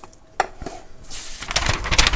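A metal tobacco tin's lid pressed shut, with a sharp click about half a second in. Near the end comes a rustle of handling as a sheet of paper is lifted.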